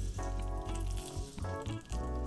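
Background music, with a faint sizzle of flatbread pressed into hot oil at the bottom of a stainless-steel saucepan.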